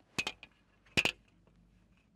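A long ruler knocking against a whiteboard as it is set in place: a quick double clack just after the start, then a louder double clack about a second in.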